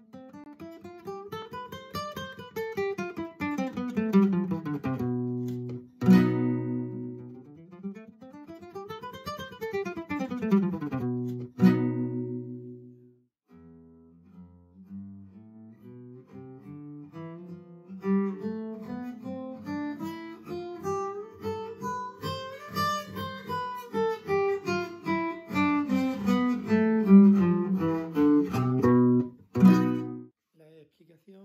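Nylon-string flamenco guitar playing fast picado scale runs: single plucked notes climbing and then falling in pitch, repeated several times. Strummed chords close the runs about six and twelve seconds in and at the end, with a slower, quieter stretch of notes in between.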